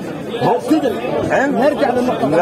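Speech only: men talking over one another in an argument, with crowd chatter.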